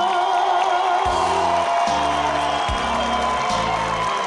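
Live band playing the closing bars of a sung ballad, low notes changing about once a second under a held chord, with the studio audience cheering and whooping over it.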